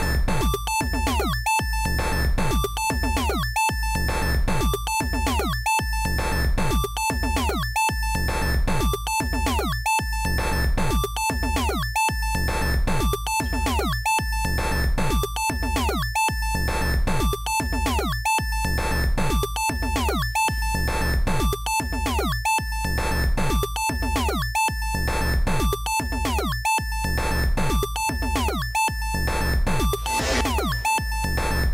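Synced Teenage Engineering Pocket Operator synthesizers, including the PO-16 Factory, playing a looping chiptune pattern with a steady beat, a bass line and repeated short falling synth blips.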